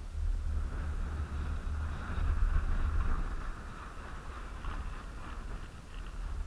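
Wind buffeting a camera microphone on a moving chairlift: an uneven low rumble with a steady hiss above it, loudest a couple of seconds in.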